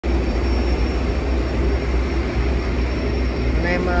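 Suzuki 150 hp outboard motor running steadily with the boat under way at trolling speed, mixed with the rush of the wake and a heavy low rumble.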